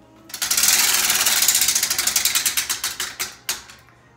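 Prize wheel spun by hand, its pointer flapper clicking rapidly against the pegs. The clicks slow and spread out as the wheel loses speed, and stop about three and a half seconds in when it comes to rest.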